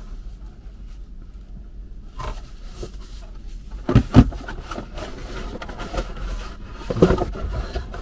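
Cardboard box and packaging being handled: rustling and scraping, with two sharp knocks about four seconds in and another cluster of knocks near the end.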